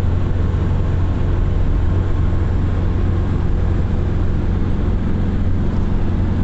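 Steady low rumble of road and engine noise inside a moving Hyundai's cabin, driving on a highway.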